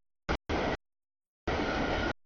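A freight train's cars rolling past, heard as rail noise that comes in three chopped bursts. The last burst, near the end, is the longest, and the sound drops out completely in between.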